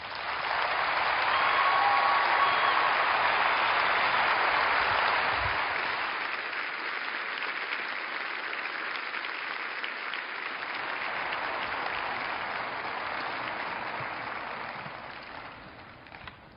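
Audience applauding. The applause swells quickly to its loudest in the first few seconds, then eases and dies away near the end.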